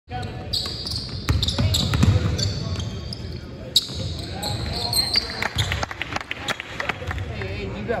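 A basketball being dribbled and bouncing on a hardwood gym floor, with sneakers squeaking and players and spectators talking, all echoing in a large gymnasium.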